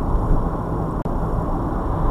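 Steady road and engine rumble inside a car's cabin moving at about 30 mph, picked up by a dashcam microphone, with a momentary dropout about halfway through.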